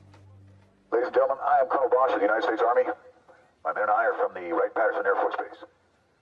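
Speech: a voice says two phrases of about two seconds each, after a held music chord fades out in the first second.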